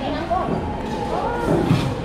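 Indistinct talking and chatter of several people in a restaurant dining room; no clear words.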